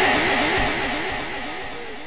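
Echo tail from a PA sound system's delay effect: one warbling sung or spoken syllable repeats about four times a second and dies away evenly.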